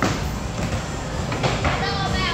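Small ball rolling down a mini-bowling lane with a low rumble, a sharp knock as it is released at the start and another knock about a second and a half in.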